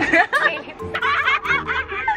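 Women laughing in short bursts, with background music underneath.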